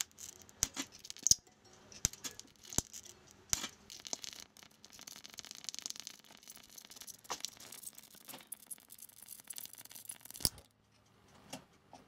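Small high-voltage arc from a TV flyback transformer driven by a ZVS driver, crackling with irregular sharp clicks over a faint high sizzle. It goes quiet about ten and a half seconds in.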